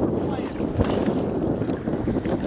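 Wind buffeting the microphone over choppy lake water, with a brief thump about a second in.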